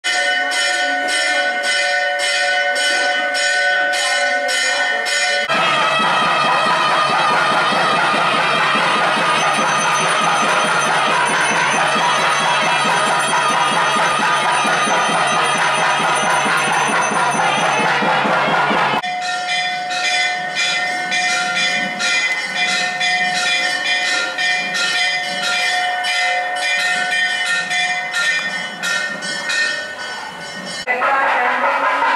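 Temple bells ringing in repeated strokes, about two to three a second, each leaving a lingering ring. From about five seconds in to about nineteen seconds the ringing turns into a dense, fast clanging, then settles back to steady strokes.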